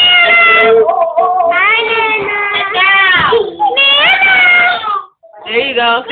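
A young child's high-pitched, wordless drawn-out vocalizing: several long wavering wails or squeals that slide up and down in pitch, broken by short pauses, with a brief silence about five seconds in.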